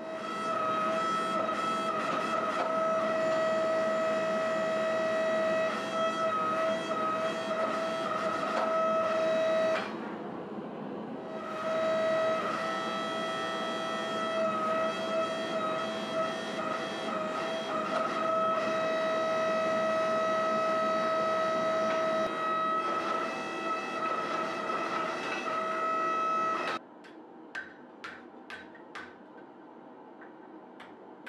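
Hydraulic forge press pump running with a steady whine, as a punch is driven through a hot axe head to open the eye. The whine drops away briefly about ten seconds in, then picks up again. It stops shortly before the end, and a run of light ticks follows, about two or three a second.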